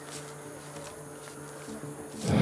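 An insect buzzing low and steady, with a faint constant high whine above it.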